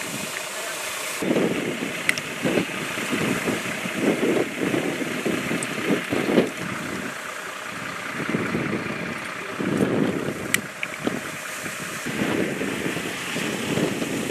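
Wind buffeting the microphone in irregular gusts, over the low running of idling emergency-vehicle engines. Two brief sharp clicks come about two seconds in and again about ten seconds in.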